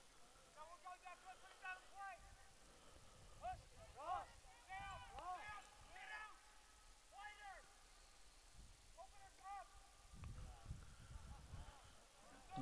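Faint, distant shouting of soccer players across the field: a string of short calls, a player calling out instructions to his teammates.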